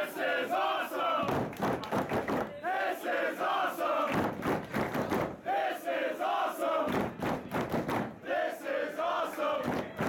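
Wrestling crowd chanting in unison: a short phrase of three or four shouted syllables, repeated four times at about one every three seconds, over general crowd noise.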